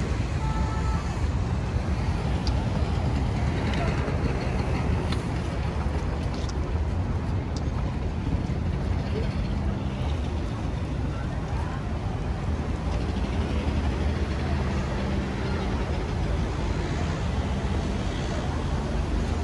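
Busy city outdoor ambience: a steady low rumble of road traffic with the voices of people walking past.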